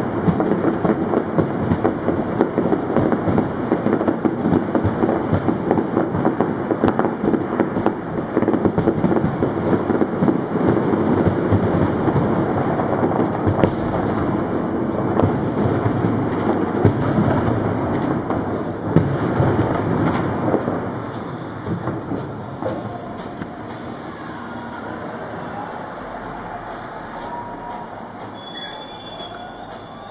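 Fireworks going off in a dense, continuous barrage of crackles and bangs, which dies away after about twenty seconds to a quieter background.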